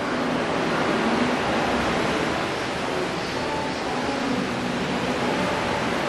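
Steady rushing background noise with faint, scattered tones beneath it.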